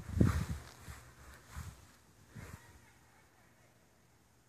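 Soft low footsteps, with a little rustle, of a person walking backwards while filming. There are about four of them, less than a second apart, fading out by about three seconds in.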